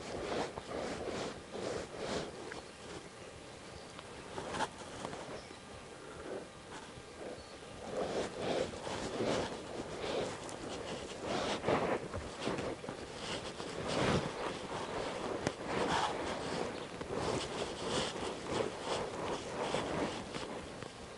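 A horse shifting and stepping in soft arena dirt under a rider: irregular soft hoof thuds and shuffles, sparse at first and busier from about eight seconds in.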